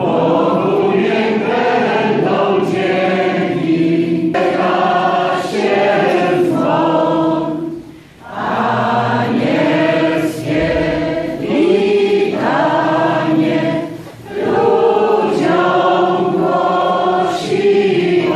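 Congregation singing together, in sung phrases broken by short pauses about eight and fourteen seconds in.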